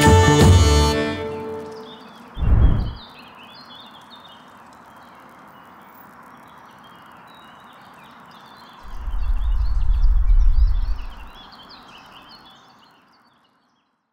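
A music track fading out, followed by outdoor ambience with birds chirping. A short low thud comes about two and a half seconds in, and a low rumble lasts a few seconds from about nine seconds in, before everything fades out near the end.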